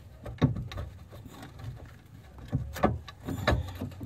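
Irregular metal knocks and clunks from a Citroën C4 rear suspension arm and its through-bolt being worked loose from a worn bush, the knocks bunching together in the last second and a half.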